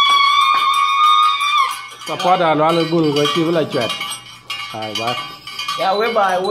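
A high held call lasting until about two seconds in, then a man's voice chanting with a quickly wavering pitch, with small metal bells clinking.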